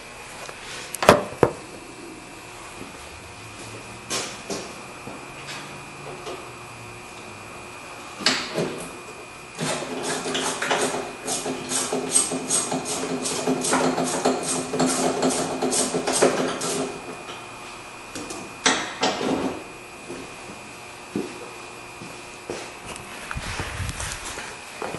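Hand-work noises inside a truck door: scattered knocks and clicks of tools on the door's metal and hardware, then for about seven seconds midway a run of rapid clicks, about three or four a second, over a steady hum.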